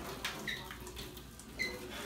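Water pouring in a thin trickle from a small saucepan into a kitchen sink. Two faint, short, rising high plinks, about half a second in and near the end, are drops landing in water.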